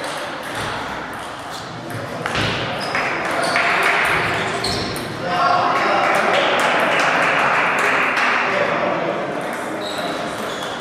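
Table tennis balls clicking off bats and tables across a busy sports hall, many hits overlapping from several tables. Under them, voices and a broad wash of hall noise swell about two seconds in and grow louder from about five seconds.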